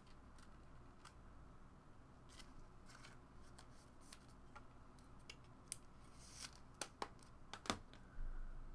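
Quiet handling of trading cards and plastic card holders: scattered faint clicks and rustles, with a few sharper clicks in the second half.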